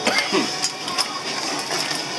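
A few scattered sharp clicks and clacks of metal tongs among live blue crabs in a plastic cooler, over a steady hiss.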